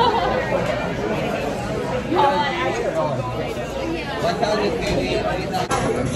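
Indistinct chatter of several overlapping voices: the hubbub of a busy restaurant dining room.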